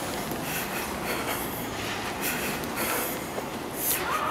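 Footsteps crunching through fresh snow at a steady walking pace, about two steps a second, over a steady background hiss.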